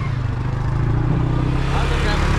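ATV engines running at low speed with a steady low hum.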